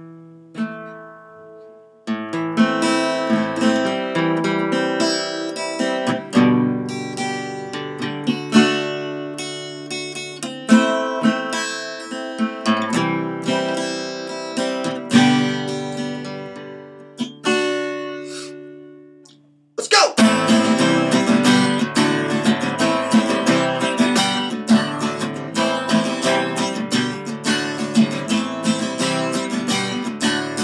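Cutaway steel-string acoustic guitar playing a song's instrumental opening: ringing picked chords for about two-thirds of the time, dying away briefly, then fuller, faster strumming.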